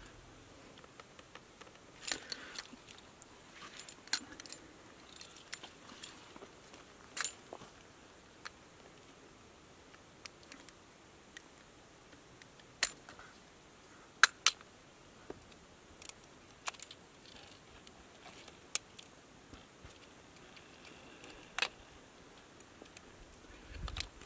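Scattered small, sharp clicks and light scraping from hands working a yellow plastic plug onto an electrical cable, as the wire ends are trimmed and fitted into the plug housing. The clicks come singly, a second or more apart, over a faint background.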